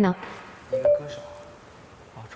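A short electronic beep about three quarters of a second in, stepping slightly up in pitch and fading out within about half a second.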